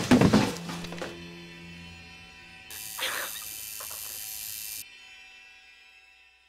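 A sudden loud thump and scuffle as a person is slammed down onto a table, over sustained film-score music that fades away. About three seconds in there is a brief hiss with another short noise.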